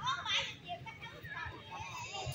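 Background chatter of people's voices, not close to the microphone, with a brief high-pitched voice at the very start.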